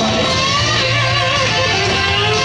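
Gibson electric guitar playing a loud lead line through an amplifier, with notes bent and wavering in vibrato over a full low end.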